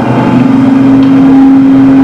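A man's voice holding one steady, drawn-out note into a handheld microphone for about two seconds, between stretches of speech.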